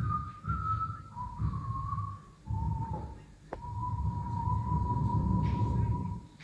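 Whistled tune, a single clear tone stepping down through a few short held notes and then holding one long note, over a low rumbling drone in the band's live sound. A sharp click about three and a half seconds in.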